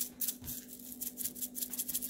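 Crushed red pepper flakes rattling in a spice jar as it is shaken in quick strokes, about five light rattles a second.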